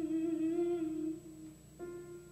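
Soprano holding a single soft, hummed note with a slight waver, fading out about a second and a half in; a steady piano note starts suddenly near the end.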